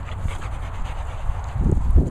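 A dog panting and sniffing close to the microphone over a low rumble of wind and handling noise, with a heavier thump near the end as the phone is moved.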